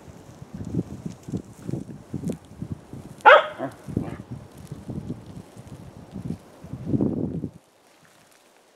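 A dog barks once, short and sharp, about three seconds in, the loudest sound here. Under it are low, even footsteps on gravel, about two a second. Near the end comes a brief rush of noise, then the sound cuts off suddenly.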